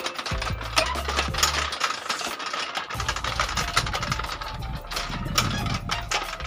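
A row of metal Tibetan prayer wheels spun one after another by hand, clicking and clattering on their spindles. Background music with a low bass line plays under it.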